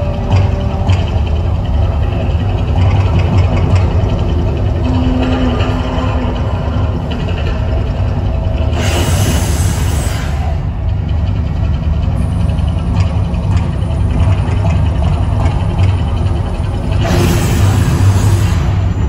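Artificial volcano show: a loud, steady low rumble with music from the show's sound system, broken twice by a noisy burst of a fireball shooting up, about nine seconds in and again near the end, each lasting about a second and a half.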